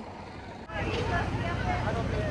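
About a second in, a sudden cut to a steady low engine rumble from large vehicles idling, with the chatter of a crowd of adults and children over it.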